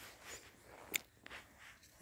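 Faint footsteps on dry soil in quiet open-air ambience, with one sharp, brief click about a second in.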